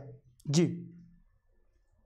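A man says a single short word, "jee", with a brief sharp click just before it.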